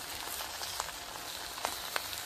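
Raw shrimp sizzling in olive oil in a wok: a steady hiss with a few sharp pops of spitting oil.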